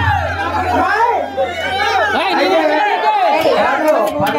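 Several voices talking over one another, with a low steady hum underneath for the first half or so.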